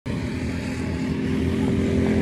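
Several go-kart engines running together on the track, a steady drone of small engines at speed.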